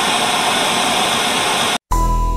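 A loud burst of static hiss, a glitch transition sound effect, that cuts off suddenly near the end. After a split second of silence, a music track begins with bell-like notes.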